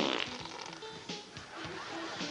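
Prank fart sound effect from a hidden sound-effects device, a short raspy burst right at the start, followed by light background music.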